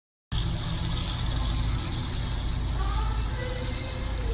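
Steady rush of water falling from an indoor wall fountain into its basin, with a deep low rumble under the hiss; it starts abruptly just after the beginning.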